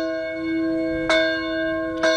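A rope-pulled church bell ringing: its clapper strikes once about a second in, and the tone keeps sounding between strokes.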